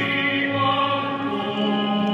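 Operatic classical music: long sustained sung notes over orchestral accompaniment.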